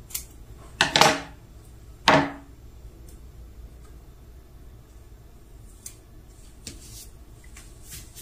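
Heat tape being pulled and cut: a few short, sharp rips and snips about one and two seconds in, then quiet handling of paper on the shirt.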